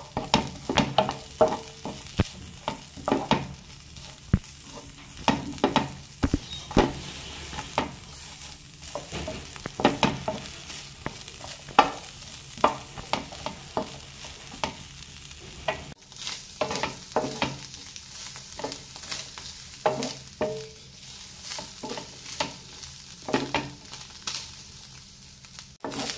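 A spatula stirring and scraping sliced onions, grated coconut and green chillies in a nonstick pan as they fry, in irregular scrapes and taps about once or twice a second over a faint sizzle. The mix is being roasted for a xacuti masala.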